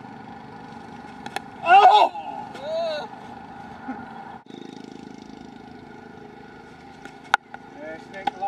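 Cricket bat striking the ball, a sharp crack a little over a second in and another near the end, with a loud shout right after the first hit. A steady hum runs underneath.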